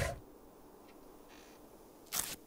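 Near silence: a hushed pause with low room tone, broken only by a faint tick about a second in and a brief soft hiss just after.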